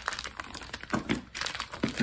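Packaging crinkling and rustling as it is handled, in irregular crackles with a few sharper ones about a second in and near the end.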